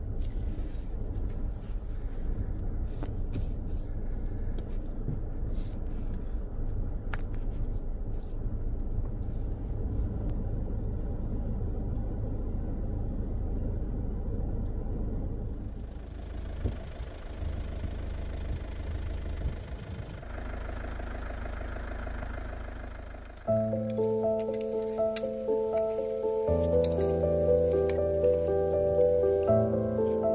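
Steady low road and engine rumble heard from inside a car driving on a snow-covered road. After a cut it gives way to a softer hiss, and about three-quarters of the way through, background music with held, stepped notes begins.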